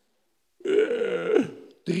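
A man's single raspy, guttural vocal sound, about a second long, starting after a brief silence and falling in pitch at the end.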